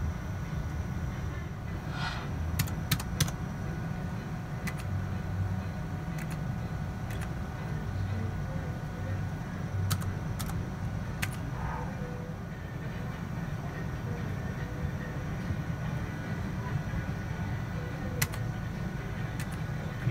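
Steady low hum of a casino floor with scattered sharp clicks, about a dozen, of the buttons on a video poker machine being pressed to hold and deal cards. The machine itself plays no game sounds.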